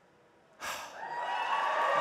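Near silence, then about half a second in an abrupt rush of noise that settles into a steady hiss with a faint steady tone: the background sound of a C-SPAN video clip starting to play.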